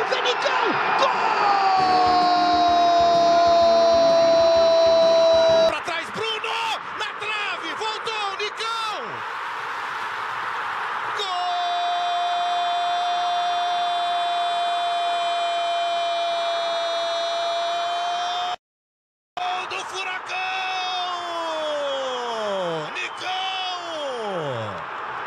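Portuguese-language TV football commentators' drawn-out goal cries over stadium crowd noise: one held on a single note for about four seconds, then, after a cut, another held for about seven seconds. Near the end come excited, falling shouts.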